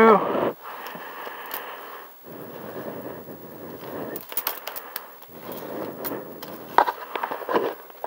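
Handling noise from a handheld camera being moved around a motorcycle's handlebars: a low rustle with a few scattered clicks and knocks, bunched about four seconds in and again near the end.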